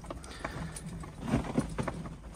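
Lake ice popping: several short sharp cracks and ticks, a few close together near the end, over a low steady background. The angler puts the popping down to wind and a nearby pressure ridge, not weak ice.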